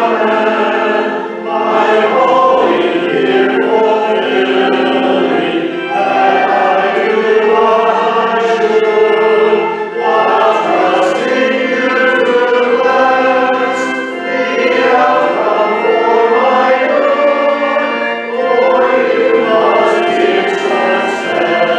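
Voices singing a hymn together with organ accompaniment, with short breaks between phrases.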